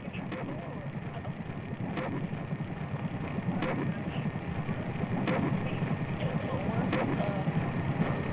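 Muffled, low-fidelity rumbling noise that grows gradually louder, with a sharp hit about every second and a half.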